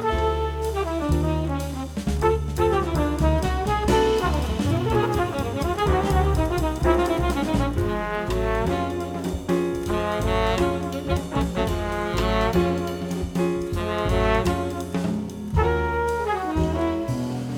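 Small jazz group playing: trumpet and saxophone on the melody over drum kit and bass, continuous and fairly loud.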